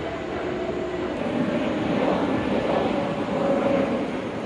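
A steady engine drone with a faint steady tone in it, swelling through the middle and easing slightly near the end.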